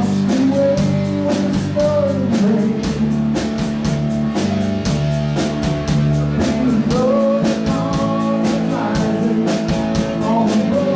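Live rock band playing: electric guitars and bass over a drum kit keeping a steady beat.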